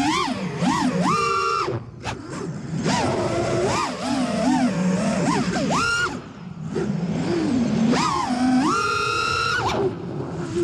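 FPV freestyle quadcopter's brushless motors and propellers whining, the pitch swooping up and down with the throttle. Two full-throttle punches hold a high whine for about a second, one near the start and one near the end.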